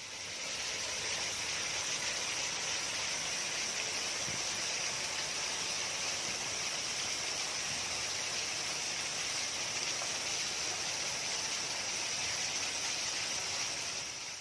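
Water falling over an artificial rock waterfall and splashing down, a steady rushing hiss that fades in at the start.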